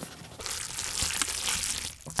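Wet, sloppy squelching of thick chili sauce and cold naengmyeon noodles in a bowl, as sauce goes on and the noodles are worked through it. It is a steady wet hiss that starts about half a second in and stops just before the end.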